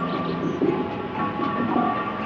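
Subway train running through an underground station: a steady rumble with held whining tones from the train.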